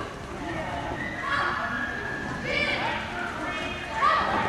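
A person calling out in short high-pitched shouts, once about a second in and again at about two and a half seconds.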